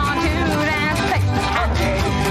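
Cowboy string band playing a country-western song on upright bass, banjo, guitar and washboard, with a man singing a wavering melody over it.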